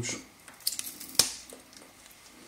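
A dill stalk being handled: a short crackling rustle, then a single sharp click a little over a second in.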